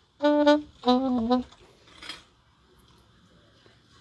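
Saxophone playing two short held notes, the second a little lower with a slight wobble, then a faint breathy puff about two seconds in: a few test notes before starting a song.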